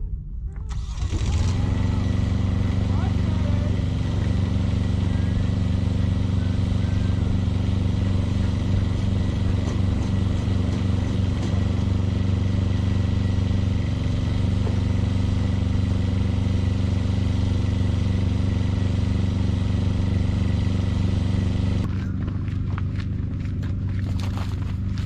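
An engine running steadily at a constant speed, with a thin high whine over it. It drops in level and changes character near the end.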